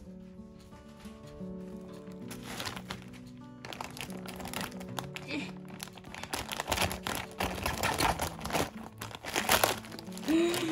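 Plastic courier mailer crinkling and rustling as it is cut open with scissors and pulled apart, starting about four seconds in and growing busier toward the end. Background music with a light melody plays throughout.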